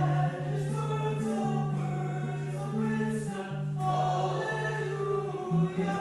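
Slow sung church service music: voices holding notes of about a second each that move in steps from pitch to pitch, in the manner of a chant or hymn.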